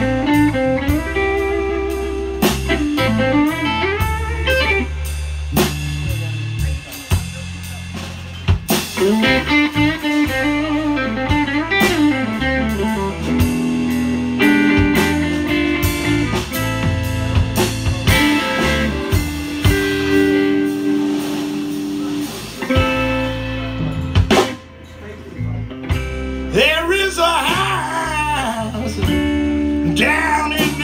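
Live blues band playing an instrumental passage: lead electric guitar with bent notes over drum kit and electric bass.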